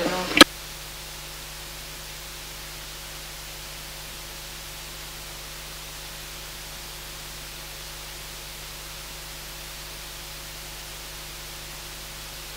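A sharp click about half a second in, then a steady electronic hiss with a faint hum: the noise floor of an audio feed with the microphone switched off.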